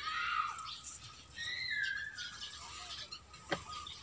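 A bird calling in the background: a few high calls, including one drawn-out call that slides slightly down in pitch about a second and a half in.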